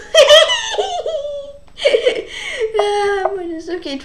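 A boy laughing in giggling bursts, then a longer drawn-out vocal sound.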